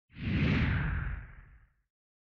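A whoosh sound effect for an animated logo: it swells in almost at once, with a deep rumble under a hiss, and fades out over about a second and a half.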